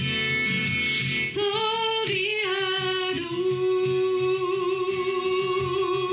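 A live worship band plays a song with Swiss German lyrics: women singing over acoustic guitar, violin and cajón. A long sung note is held from about halfway through to the end.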